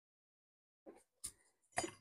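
Two faint, short metallic clicks about a second in, then a few sharper ones near the end: steel tweezers ticking against a diode lead and the circuit board while the lead is worked into a solder-clogged hole.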